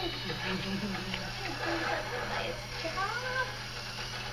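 Indistinct voices with rising and falling pitch over a steady low hum.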